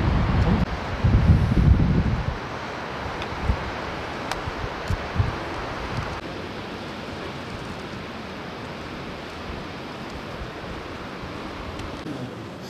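Wind buffeting the microphone for the first two seconds or so, then a steady outdoor rush of wind and distant flowing river water, with a few soft knocks near the middle.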